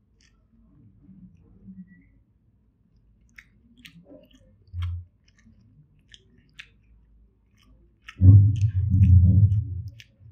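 Close-up mouth sounds of chewing a mouthful of egg fried rice: faint wet clicks and smacks scattered throughout. A much louder, low muffled sound starts about eight seconds in and lasts about two seconds.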